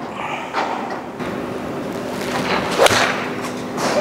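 A golf club swung and striking a ball: a short swish, then a single sharp crack of impact about three seconds in.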